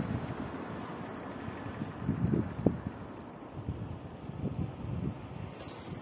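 Wind buffeting the microphone: a low, uneven rumble that swells in gusts, loudest a little past two seconds in.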